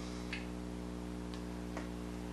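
A steady low hum with a few faint, short ticks.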